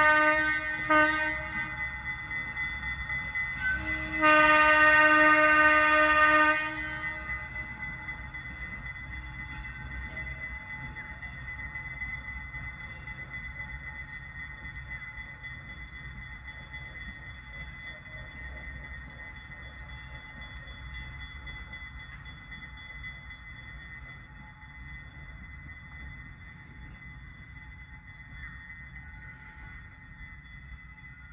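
Locomotive horn sounding on a moving passenger train: the end of one blast, a short toot about a second in, then a longer blast of about two seconds. After that the train rolls on with a low rumble and a steady high-pitched wheel squeal that slowly fades.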